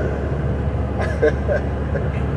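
Steady low rumble of road and engine noise inside a moving car's cabin, with a few faint, short voice sounds about a second in.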